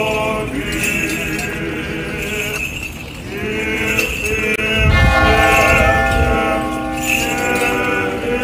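Orthodox Easter chant sung by a group of voices in a church procession, held on long notes, with small bells jingling now and then, like the bells of a swung censer. A brief low rumble comes about five seconds in.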